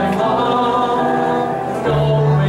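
A congregation singing a worship song together, led by a man's voice, in long held notes.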